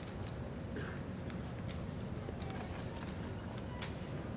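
Irregular clicks and slaps of a drill rifle being spun and caught by hand, the stock and metal parts knocking against the palms, with a sharper strike just before the end.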